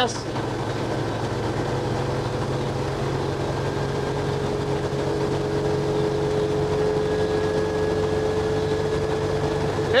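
Dodge M37's flathead inline-six running steadily at high revs under load as the truck accelerates from about 46 to 51 mph, heard from inside the open, bare-metal cab; its drone climbs slightly in pitch through the middle.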